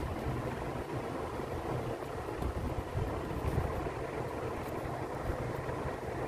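Steady low rumbling background noise with no speech and no distinct events.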